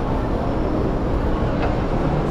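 Steady low rumble of a busy indoor public space with faint background voices, and a light knock about one and a half seconds in as a glass door is pushed open.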